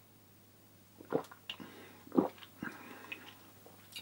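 A man swallowing a mouthful of beer: two soft gulps about a second apart, followed by faint mouth sounds.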